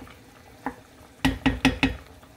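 Wooden spoon stirring squid through a simmering sauce in a coated pan. There is one knock about two-thirds of a second in, then four quick knocks close together near the end.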